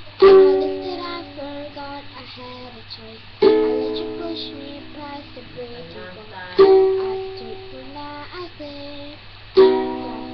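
A medium-size ukulele being strummed as song accompaniment, with a hard chord struck about every three seconds and left to ring out, four in all. A girl's voice sings softly between the chords.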